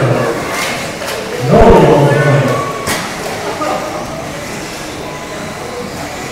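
Indistinct voice echoing in a large indoor hall over steady room noise, loudest from about one and a half to two and a half seconds in, with a sharp click near the middle.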